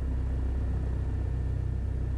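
1966 Mooney M20E's four-cylinder Lycoming IO-360 engine and propeller idling, a steady low drone heard inside the cockpit.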